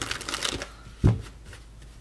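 A tarot deck being shuffled in the hands: a quick papery rattle of cards for about half a second, then a single soft thump about a second in.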